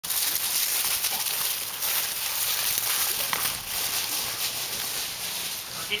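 Dry fallen leaves rustling and crackling continuously as dogs run and play through them on a leaf-covered lawn.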